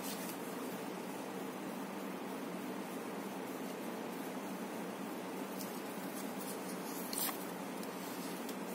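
Faint handling of tarot cards being lifted and moved over a cloth-covered table, with a few soft clicks and one sharper card tap about seven seconds in, over a steady background hiss.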